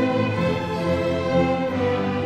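Youth string orchestra of violins and cellos playing: a held upper note sounds over lower string notes that change every half second or so.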